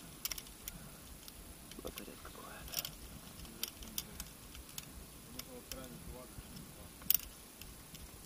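A few light, sharp clicks scattered through a quiet stretch, the sharpest about seven seconds in, with faint, distant voices murmuring.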